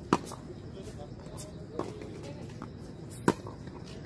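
Tennis rally on a hard court: two loud, sharp racket-on-ball strikes close by, at the start and about three seconds in, with a fainter strike from the far end of the court in between and smaller ticks of ball bounces.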